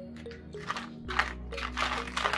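Clear plastic bag crinkling in several bursts as it is handled, the loudest near the end, over background music with a steady low bass line.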